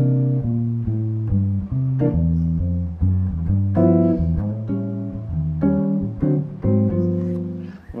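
Archtop hollow-body electric guitar played clean in a jazz blues comping style: chords held over a walking bass line, the low bass note stepping to a new pitch about every half second to a second.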